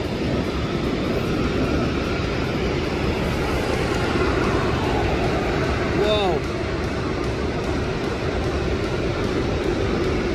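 Steady outdoor traffic and street noise, with a short falling tone about six seconds in.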